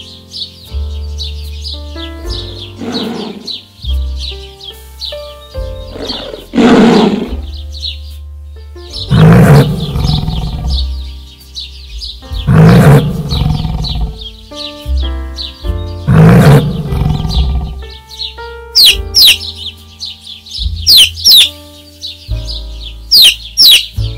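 Background music with several loud calls from a large animal, spaced a few seconds apart, then a run of quick high chirps from a bird or chick in the last few seconds.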